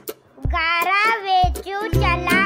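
Children's song: a child's voice singing a Marathi rain rhyme over a backing track with a low beat, after a brief pause at the very start.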